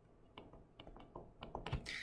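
Faint, irregular small clicks and taps of a stylus pen writing on a tablet screen.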